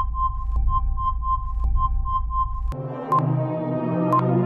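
Electronic quiz music with a high beep repeating about four times a second while the answer is revealed. Near three seconds in, the music changes and a single beep sounds about once a second as the timer for the next question counts down.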